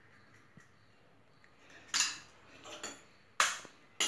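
Short metallic clatter of a stainless-steel mixer-grinder jar being handled: a knock about two seconds in, a lighter one after it, and a sharper one near the end.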